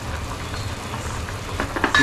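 Steady hiss and low rumble of cooking on a lit gas stove: onion-tomato masala frying in a steel kadai. A few light clicks come near the end.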